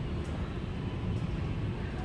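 Steady low rumble of indoor store background noise, with a couple of faint ticks.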